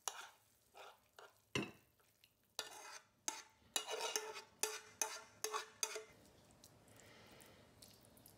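Metal spoon scraping and knocking against a nonstick frying pan and a ceramic plate while cooked food is scooped out: a string of short scrapes and clinks, some ringing briefly, that stops about six seconds in.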